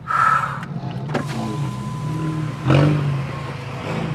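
SEAT León FR engine running at low speed, heard from inside the cabin as a steady low hum. A short whir comes right at the start, a click a little after a second, and a louder burst of noise nearly three seconds in.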